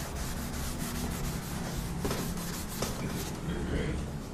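Chalkboard duster rubbing chalk writing off a blackboard, a steady scrubbing rub.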